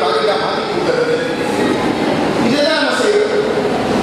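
Speech only: a man giving a talk into a lectern microphone.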